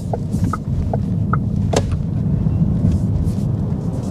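Cupra Born electric car being driven hard from low speed, heard from inside the cabin: a steady low road and tyre rumble that grows a little after about half a second. Several short, sharp chirps or clicks come in the first two seconds. On the dry road, traction control holds back the power rather than letting the rear wheels spin.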